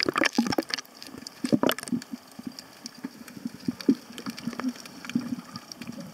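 Seawater splashing and gurgling around a camera at and just under the sea surface, with irregular splashes and small clicks.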